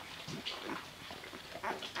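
Eight-day-old puppies nursing at their mother: small wet suckling and smacking clicks with a few brief squeaks and grunts.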